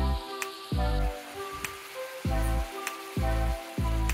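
Background music with deep bass notes about every second, pitched melody notes and sharp clicks, over a steady sizzle of bean sprouts frying in an electric skillet.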